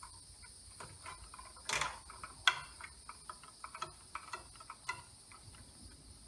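Pliers twisting bare copper ground wires together into a pigtail: scattered small clicks and scrapes of metal on metal, with a brief rasp about two seconds in.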